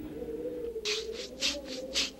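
Cartoon sound effects: a faint wavering tone, joined about a second in by a quick run of short scratchy rattle strokes, about five a second.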